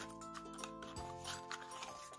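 Quiet background music of held chords, the chord changing about a second in, with faint clicks and rustles of paper banknotes being handled.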